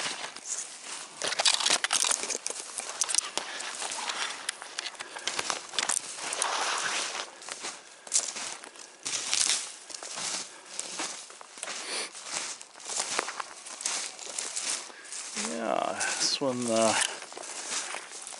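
Footsteps crunching through shallow snow and brushing past dry twigs and underbrush, at a steady walking pace.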